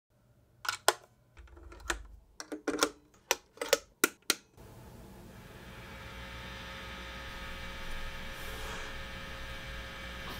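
A quick run of about ten sharp clicks and clacks, then a tube guitar amplifier's steady mains hum and hiss that swells over a few seconds as its volume knob is turned up.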